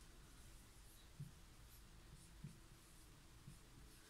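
Faint strokes of a marker pen writing on a whiteboard, with a couple of soft knocks about one and two and a half seconds in.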